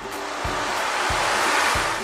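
A wave-like whoosh sound effect that swells gradually and fades just before the end, over background music with a steady low beat.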